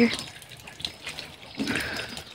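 Water flowing from a hose into a plastic bucket, a low steady running sound.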